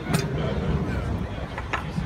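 Outdoor café terrace ambience: a steady low rumble with faint background chatter from other diners. Two sharp light knocks stand out, one just after the start and one near the end.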